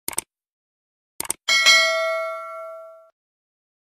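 Subscribe-button sound effect: a couple of short mouse clicks, then two more clicks and a notification bell ding that rings for about a second and a half and fades away.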